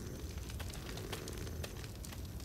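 Campfire crackling in small scattered snaps over a faint steady low rumble of night ambience.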